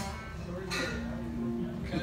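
Stray sounds from a live band between songs: a click, then a single note held for about a second on an instrument on stage, with no rhythm yet.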